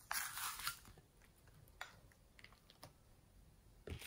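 Soft crackly rustle of a sheet of modelling clay being handled and laid into a glass dish, strongest in the first second, then a few faint scattered clicks.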